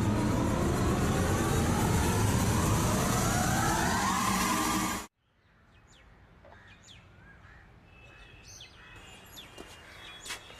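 A loud dramatic swell with a tone rising steadily in pitch over a dense low rumble, a horror-score riser, cut off abruptly about five seconds in. It is followed by quiet outdoor ambience with birds chirping here and there.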